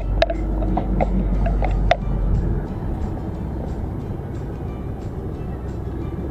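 Steady road and engine noise of a moving car heard from inside the cabin, with faint music playing alongside. A few sharp clicks sound in the first two seconds, and the deep rumble eases about two and a half seconds in.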